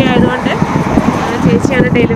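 A woman talking, over street noise with road traffic from a car on the road.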